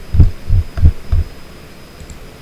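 Five dull, low thumps in quick succession, about three a second.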